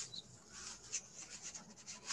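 Faint rubbing and scratching noises: a few brief, soft strokes.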